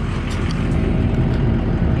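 The truck's 6.0-litre turbo diesel idling, a steady low rumble heard from inside the cab.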